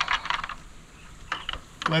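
Metal latch and lock hardware on an enclosure door being worked by hand: a quick run of clicks and rattles, then a couple more clicks about a second and a half in.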